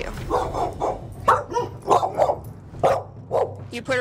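Pit bull barking over and over, about two or three sharp barks a second, barking like crazy. This is the agitated barking she does when she is confined.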